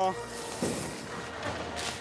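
Soft rustling and swishing of the deflated inflatable T-Rex costume's synthetic fabric as it is pulled and gathered off a kick scooter, with a brief sharper swish near the end.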